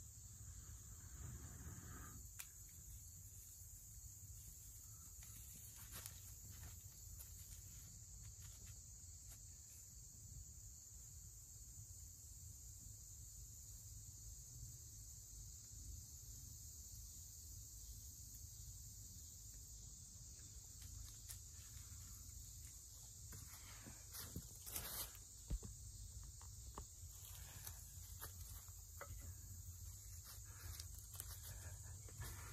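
Faint, steady high-pitched chorus of insects, with scattered soft clicks and rustles that come thickest a few seconds before the end.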